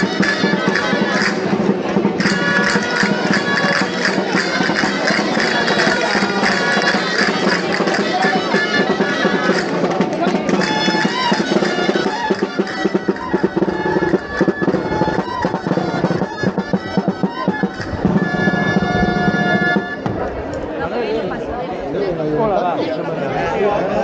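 Dulzaina (Spanish shawm) and drum playing a traditional dance tune over crowd chatter. The music stops about twenty seconds in, leaving the crowd talking.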